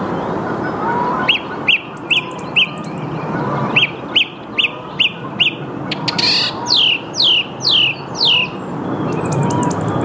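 Song thrush singing, each short phrase repeated several times in quick succession: a run of four sharp notes, then five, then four falling whistles, over a steady low background noise.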